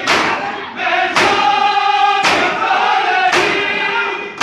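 Crowd of men performing matam, slapping their bare chests in unison about once a second, four strikes here, while many voices sing a mourning noha between the beats.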